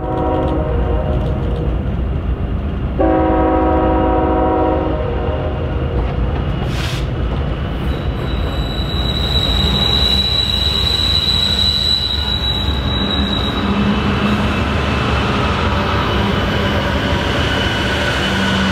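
Diesel freight locomotive horn: a short blast, then a longer one of about two seconds. Then a freight train passing close, with a thin, high wheel squeal for about five seconds in the middle.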